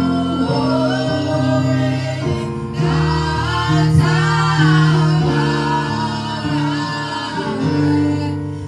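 Gospel worship song sung by a woman into a microphone, over held instrumental chords that change every second or two.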